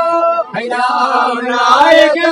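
Male singing in a held, chant-like folk melody from Mewar's Gavri tradition. There is a short break about half a second in, after which the line resumes.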